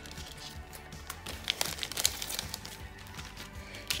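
Clear plastic cellophane bag crinkling in short sharp crackles as a handmade card is worked out of it. Soft background music plays underneath.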